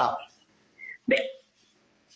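A speaking voice as a phrase ends, then one short, sharp vocal sound about a second in, with brief pauses between.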